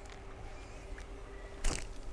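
A bait catapult firing a pouchful of pellets: one short, sharp snap near the end, over a quiet background with a faint steady hum.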